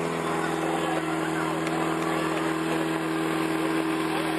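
Portable fire pump engine running steadily at a constant high speed, one even engine tone throughout.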